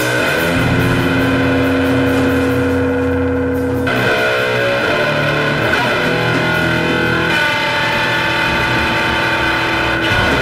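Slow sludge/doom metal: loud electric guitars holding long chords that change about four seconds in and again past seven seconds.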